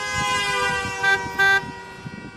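Car horns honking in city street traffic: a steady held horn note with two short, louder honks a little after a second in.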